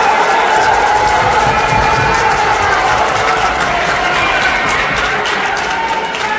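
A crowd shouting and cheering, many voices overlapping at a steady level, with a few sharp claps or smacks among them.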